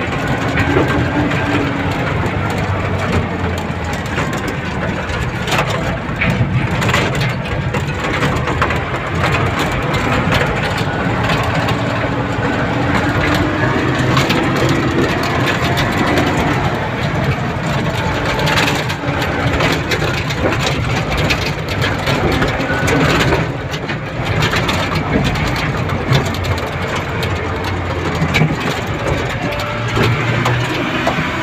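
Diesel tipper truck's engine running steadily, heard from inside the cab, with frequent knocks and rattles as it travels over a rough quarry track.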